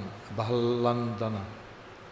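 Speech only: a man's voice saying one slow, drawn-out word, the Sanskrit name Bhalandana, about half a second in.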